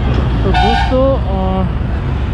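Road traffic with a steady, heavy low engine rumble. About half a second in, a short pitched sound that wavers up and down rises over it for about a second.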